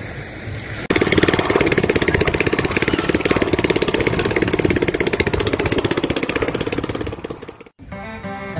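A small boat engine running steadily with a rapid, even beat. It starts suddenly about a second in and cuts off just before the end.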